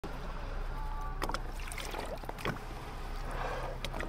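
Small boat sitting on the water alongside a grey whale: a few sharp knocks and water sounds against the hull over a low steady hum.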